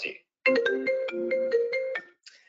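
Mac FaceTime incoming-call ringtone: a quick run of bright struck notes, starting about half a second in and cutting off suddenly after about a second and a half.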